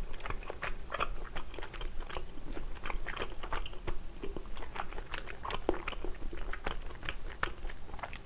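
Close-miked chewing of a last mouthful of food, heard as a continuous run of small mouth clicks and soft crunches.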